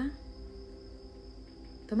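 Crickets chirring in one steady high-pitched tone, with a faint drone of ambient meditation music underneath. A woman's voice starts speaking at the very end.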